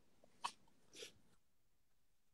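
Near silence, with a faint short click about half a second in and a faint brief breath-like noise about a second in.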